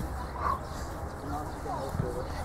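Distant voices calling across an outdoor football pitch over a steady low rumble, with one brief louder call about half a second in.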